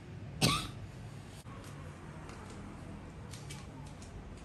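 A single short human cough about half a second in, followed by a few faint ticks over a low steady hum.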